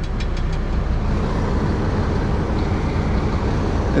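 Semi-truck's diesel engine running at low speed while the rig backs slowly, heard from inside the cab as a steady low rumble. A few faint clicks sound in the first half second.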